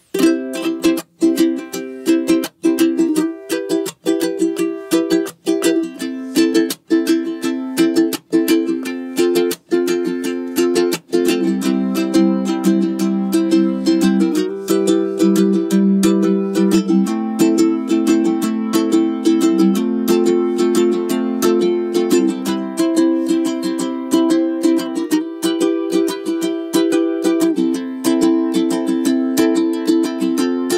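Solid koa tenor ukuleles strummed in chords, playing the same piece on a Kamaka HF3, then a KoAloha KTM-00, then a Kanile'a K1-T near the end. For the first ten seconds or so, the strums come about every second and a half with short breaks between them. After that the strumming is continuous and the chord changes every couple of seconds.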